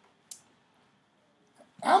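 A pause in a man's lecture: near-silent room tone with one brief faint click about a third of a second in. Near the end his voice starts again on a drawn-out word.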